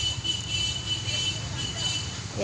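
Low steady rumble of distant road traffic, with a thin steady high-pitched tone over it.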